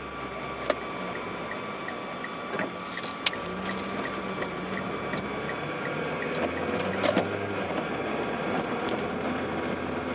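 Car cabin noise while driving: a steady hum of engine and road noise, with a faint, fast ticking, about three ticks a second, through most of it. A few sharp knocks come about three seconds apart.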